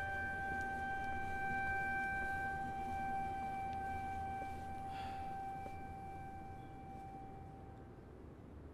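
Background score of one long held instrumental note, steady and then fading away near the end.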